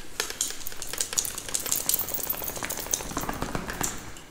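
Dense crackling rustle made of many small rapid clicks. It starts suddenly and stops suddenly about four seconds later.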